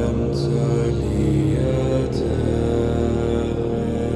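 Gregorian chant, voices singing long held notes that change pitch slowly.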